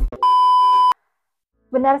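Steady test-tone beep of a TV colour-bars screen, under a second long, cutting off sharply. After a short silence a woman starts speaking near the end.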